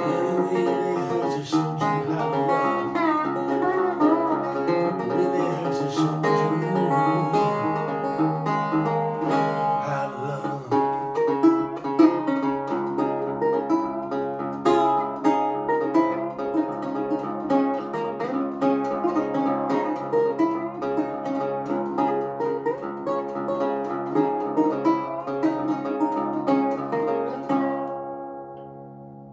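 Metal-bodied Recording King resonator guitar played blues-style with a metal slide, picked notes gliding between pitches. The last notes ring out and fade at the end.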